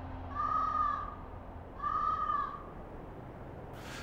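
A bird calling twice, two drawn-out calls each under a second long and about a second and a half apart, over a faint low hum.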